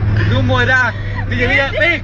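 Voices talking over the steady low drone of a car driving, heard from inside the cabin.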